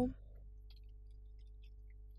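A faint, steady electrical hum made of several fixed low tones, the room tone of the recording, just after a spoken word ends at the very start.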